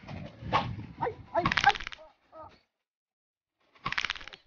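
A man's wordless voice in short bursts of cries or grunts, loudest in the first two seconds, with one more burst near the end.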